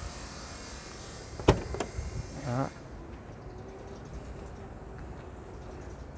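Power tailgate of a 2016 Mercedes-Benz GLC 250 opening by remote key: two sharp clicks as the latch releases about a second and a half in, then the tailgate motor's faint steady hum as the hatch lifts, stopping about five seconds in.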